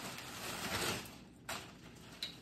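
Clear plastic wrapping rustling and crinkling as a compound bow is slid out of it, dying down after about a second, followed by a single sharp click.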